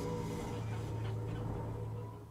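A steady low hum with a faint, thin higher tone above it.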